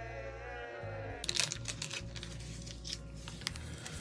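A group of voices gives a flat, drawn-out cheer of 'yay' from an animated film clip, lasting about a second. After it come light clicks and crinkles of trading cards and pack wrappers being handled.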